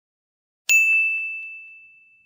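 A single bright ding, struck about two-thirds of a second in and ringing on one high tone as it fades away over the next second and more, with a few faint ticks under it. It plays as the title-card chime.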